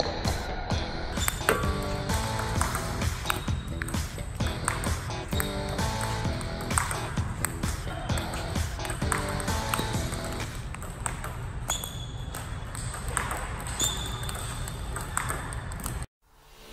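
Background music over the sharp clicks of a table tennis ball striking paddles and the table in a practice rally, several clicks a second.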